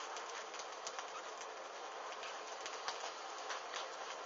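Burning paper crackling: a steady hiss of flame with irregular small sharp crackles.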